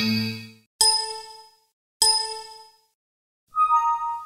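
Windows system event sounds previewed one after another: a Windows Critical Stop chime right at the start, then two bright chimes about a second and two seconds in, and a softer two-note Windows Notify chime near the end. Each one fades out within about a second.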